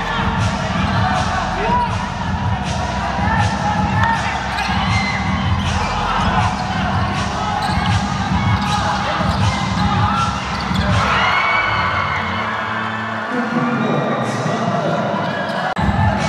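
Basketball game sound on a hardwood court: a ball bouncing in repeated knocks as it is dribbled, with players' voices calling out in the hall.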